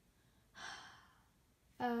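A girl's sigh: one breathy exhale about half a second in, lasting about half a second, then she starts speaking near the end.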